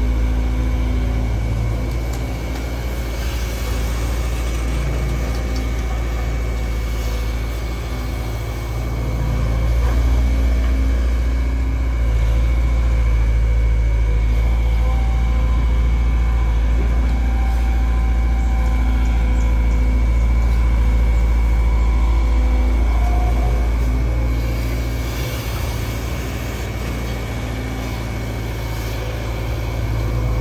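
Diesel engine of a Sumitomo SH long-reach excavator running under hydraulic load while it digs mud from the riverbed. The engine note swells for a long stretch in the middle and eases off for a few seconds before and after, following the work of the boom.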